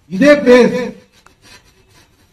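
A man's voice speaking a short phrase of about a second into a handheld microphone.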